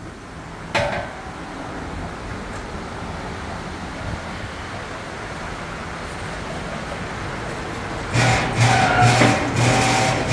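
Electric hydraulic pump motor of a two-post car lift humming in several short on-off bursts near the end, as the lift is jogged upward. Before that there is a single clank about a second in over steady shop noise.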